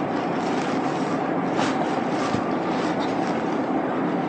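Chalk drawing on a blackboard, a couple of short strokes about a second and a half in and shortly after, over a steady background hum.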